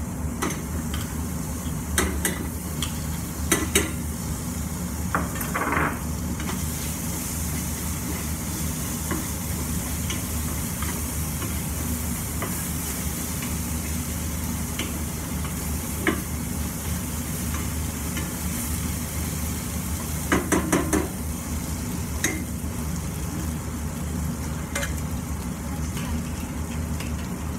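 Food sizzling in a frying pan while a wooden spatula stirs, with a few sharp knocks of utensils against the pan, including a quick run of them about twenty seconds in. The sizzle grows louder about six seconds in, over a steady low hum.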